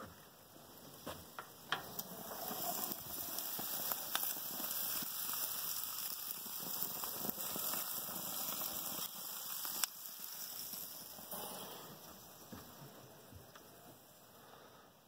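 Chicken pieces sizzling on a gas grill over the burner flames, a steady hiss that grows louder over the first few seconds and fades near the end. A few sharp clicks come near the start and one more about ten seconds in.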